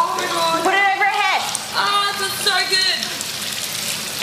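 Water poured from a plastic jug splashing over a person's bare back, a steady patter throughout. High-pitched voices cry out over it, one call falling in pitch about a second in.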